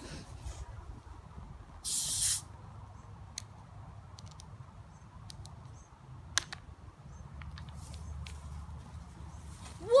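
A plastic soda bottle's cap twisted open with a short hiss of escaping gas about two seconds in, followed by a few light clicks of handling. Near the end comes a low rush as the soda foams out in a Mentos geyser.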